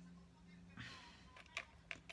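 Near silence: quiet room tone with a faint steady hum, a soft breath about a second in, and a few light clicks near the end from hands handling small craft pieces.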